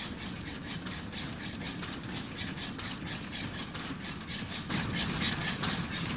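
Small early steam locomotive running along the track with its wagons, a quick even beat of about five to six sharp strokes a second, a little louder near the end.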